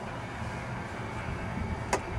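Steady low rumble of outdoor background noise, with a short click near the end.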